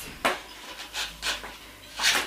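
Skateboard on carpet: a few soft knocks and scuffs as the rider shifts his sneakers on the deck, setting up for a pop shove-it.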